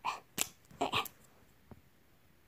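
A few short scuffs and a sharp click as a stiff cap is worked off a white pen, the last noise faint near the end.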